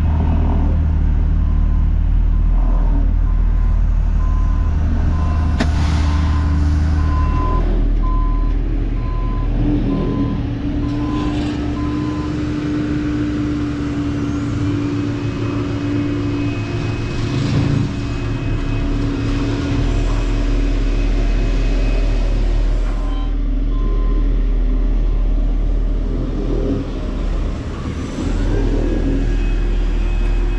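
Heavy diesel engines running steadily, with a backup alarm beeping about once a second for roughly ten seconds near the start as a machine reverses, and an engine note holding steady through the middle.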